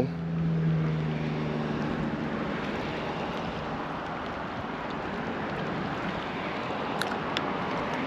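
Steady wind and small waves washing against shoreline rocks, with a low motor hum fading away over the first two seconds and two faint clicks about seven seconds in.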